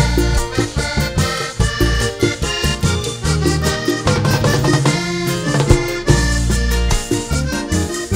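A live vallenato band plays an instrumental passage led by a button accordion running fast melodic lines, over a bass line and hand percussion including conga drums.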